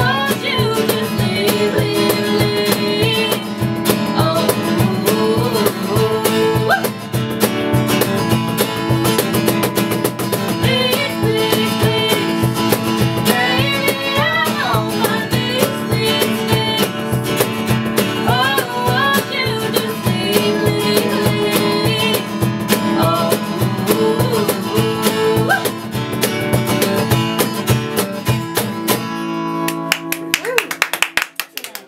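Live acoustic guitar strummed in a steady rhythm under a bending melody line, with the song coming to its close near the end.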